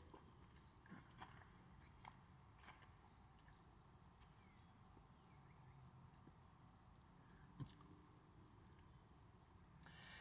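Near silence: quiet room tone inside a car cabin, with a few faint soft clicks in the first three seconds and one more a few seconds later.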